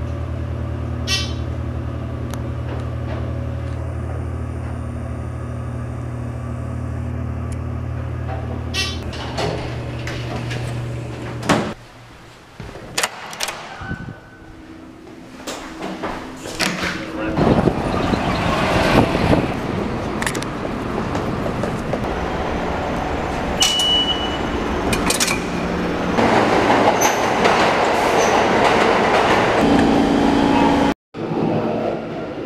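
A sequence of city sounds. First the steady low hum of a Dover elevator car running, which stops about eleven seconds in. Then a few clicks and knocks, and from about seventeen seconds the loud, steady rush of a New York City subway train, with voices in the background.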